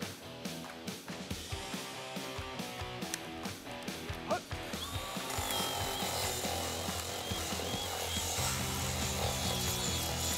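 Background music, then about halfway through, small cordless Milwaukee power tools start running against a wooden beam: a steady, slightly wavering high whine over a grinding hiss.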